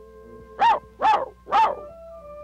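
A cartoon voice barking like a dog, three short barks about half a second apart, a creature imitating a watchdog. Soft held music notes sound underneath.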